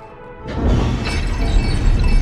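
A loud crash with a shattering quality bursts in about half a second in and keeps going, over soft background music.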